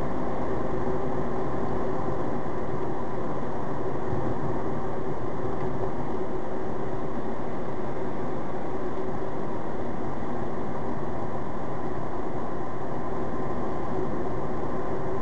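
Steady road and engine noise inside a moving car's cabin, with a faint steady hum.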